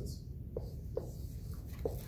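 Dry-erase marker writing on a whiteboard: a few short strokes as a letter is drawn.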